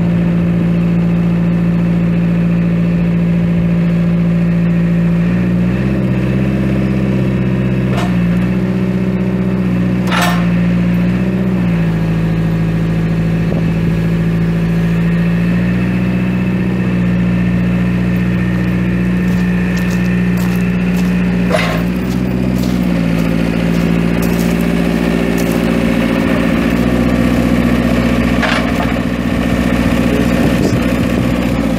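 Perkins four-cylinder diesel engine of a Terex 2306 telehandler running steadily, its note shifting slightly a few times, with a few sharp clanks.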